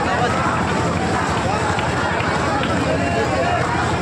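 Crowd chatter: many voices talking and calling over each other at once, at a steady level.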